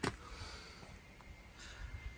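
Quiet pause with low background noise and a faint breath drawn in near the end.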